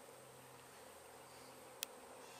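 Honey bees buzzing faintly in a steady low hum, with one short click near the end.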